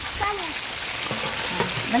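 Hot cooking oil sizzling and crackling steadily in a large frying pan beneath a whole deep-fried carp lifted out of it on metal skewers.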